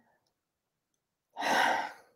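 A woman's sigh: after more than a second of quiet, one breathy exhale lasting about half a second near the end.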